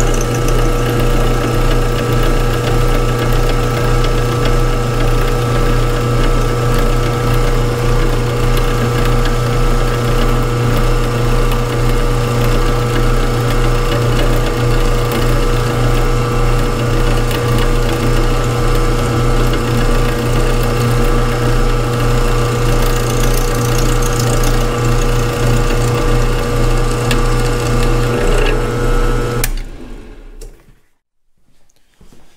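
Milling machine running steadily with its end mill cutting along a spline valley of a welded-up steel shaft, a final clean-up pass to clear leftover weld. A steady hum and whine with a low pulse about twice a second, stopping abruptly just before the end.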